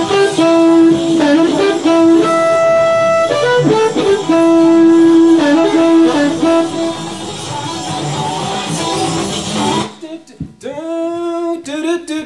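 Blues recording of a heavily rhythmic guitar with harmonica over it, the harmonica holding long, steady notes between shorter phrases. About ten seconds in the band drops out and a harmonica alone plays short notes that bend upward at their start.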